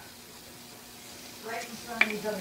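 Quiet workshop room tone with a faint steady hum; a soft voice begins about one and a half seconds in.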